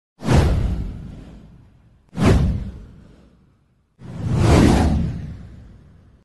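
Three whoosh sound effects from an animated title intro. The first two start sharply with a deep low end and fade over about a second and a half; the third swells up about four seconds in and fades more slowly.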